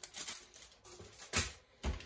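Rustling of packaging as a plastic-wrapped pack of bamboo skewers is lifted out of a foil insulated box liner, with two sharp clicks about half a second apart near the end.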